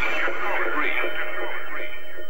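Electronic dance music in a breakdown with the kick drum and bass dropped out, leaving quick, chattering voice-like sweeps that thin out about a second and a half in.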